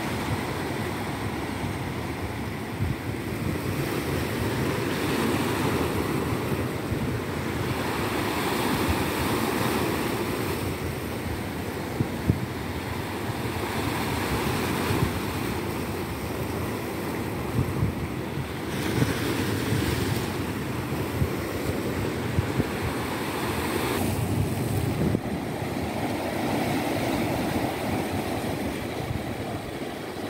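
Ocean surf breaking and washing in, swelling and easing every few seconds, with wind rumbling and buffeting on the microphone.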